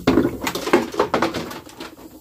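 Water splashing into a plastic reservoir bin through a float valve, a run of irregular splashes against the water already in the bin.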